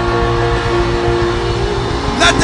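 Church keyboard holding a sustained chord over a heavy, rumbling bass, with a dense wash of noise underneath.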